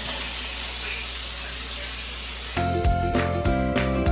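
Sliced carrots and bell peppers sizzling in a hot oiled wok, a steady hiss. About two and a half seconds in, background music with a steady beat starts and becomes the loudest sound.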